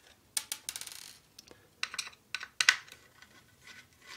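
Small screwdriver clicking and tapping against the screws and plastic case of a mini thermal printer while the circuit board is unscrewed: a quick run of light clicks about a second in, then a few separate clicks.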